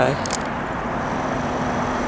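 Steady outdoor background noise, an even rumble and hiss with no distinct event.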